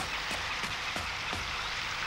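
Faint, steady background ambience of a cartoon soundtrack, an even hiss with a few soft ticks scattered through it.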